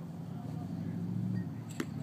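A pitched baseball hitting with a single sharp knock near the end, over a steady low hum.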